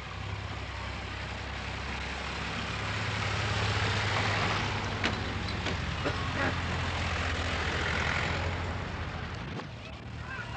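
Vehicle engines running with a steady low rumble, under crowd noise from the people around them.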